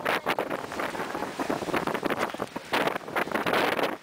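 Wind buffeting the microphone on the deck of a sailing schooner, a gusting rush of noise that swells and eases, strongest about three seconds in.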